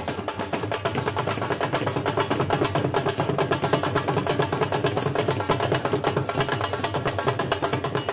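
Several dhols, double-headed barrel drums beaten with sticks, playing a fast, dense rhythm together.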